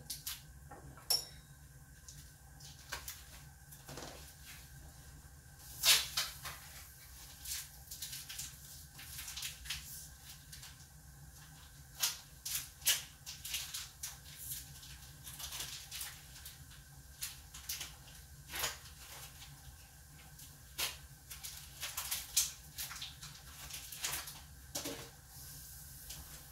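Scattered clicks, taps and knocks of kitchen handling over a low steady hum: a plastic-wrapped soy chorizo is handled and a knife is fetched from the counter. The loudest knock comes about six seconds in.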